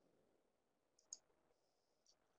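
Near silence broken by two short, faint clicks about a second in, one right after the other: the click that advances the presentation to the next slide.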